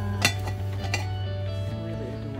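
A single sharp clink of a ceramic canister lid knocked against its jar about a quarter second in, over steady background music.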